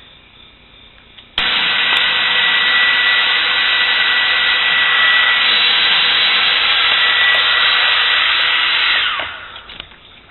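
Hair dryer switched on a little over a second in, running steadily with a thin high whine, then switched off and winding down near the end; it is blowing warm air to melt and loosen frost in a freezer.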